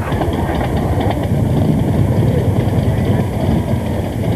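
Harley-Davidson motorcycle's V-twin engine running, with a fast, steady low pulsing.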